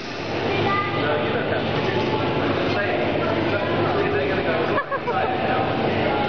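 Continuous mechanical rumble from the FLY 360 flight simulator pod turning on its arm, with voices chattering in a busy hall over it.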